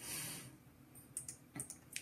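Computer keyboard keys clicking a handful of times in the second second, after a brief soft hiss at the start.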